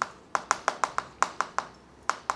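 Chalk tapping and scratching on a chalkboard as a short word is written: a quick, uneven series of about nine sharp clicks.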